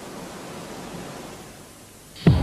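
Steady hiss with no other sound, fading slightly near the end: the background noise of the recording between the narration and the title music.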